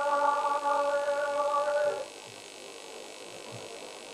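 A man's unaccompanied voice holds one long, steady note of a Pashto rubai, a devotional mourning chant. The note stops about halfway through, leaving a quiet pause with background hiss.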